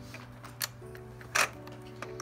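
Soft music of long held notes, with two light clicks about half a second and a second and a half in, the second one louder. The clicks fit a finger pressing the plastic buttons on a baby walker's activity panel.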